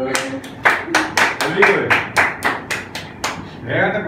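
Hands clapping in a steady rhythm, about four claps a second, for a little over three seconds, with voices faint underneath.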